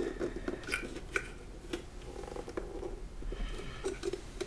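Scattered small clicks and rubbing of plastic as a Molex power connector is worked back and forth to pull it off an optical drive.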